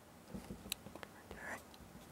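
Faint rustles and small ticks of fingers handling and pressing a piece of cork roadbed into adhesive on a foam base.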